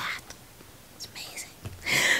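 Speech only: a woman's voice finishing a word, a short pause with faint breathy noise, then her voice starting again near the end.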